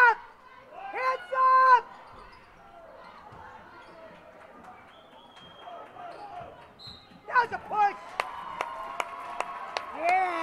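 A basketball dribbled on a gym floor, sharp evenly spaced bounces about three a second starting near the end, with loud high-pitched shouts from players and spectators at the start and again before the dribbling.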